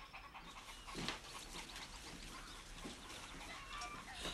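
Faint, wet eating sounds with heavy breathing: a man slurping and gulping stew from a bowl with a spoon, with a couple of slightly louder slurps.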